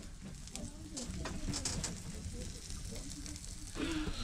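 A smelt and home fries sizzling in a cast iron skillet on a wood stove, a faint steady frying hiss with small crackles.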